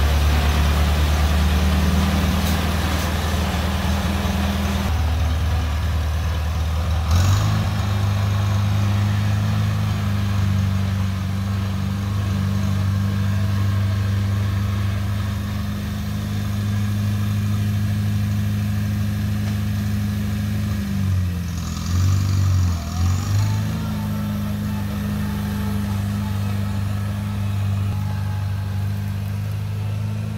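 1950 Farmall Cub's four-cylinder flathead engine running steadily as the freshly restored tractor is driven. About two-thirds of the way through, the engine speed dips briefly twice and picks back up.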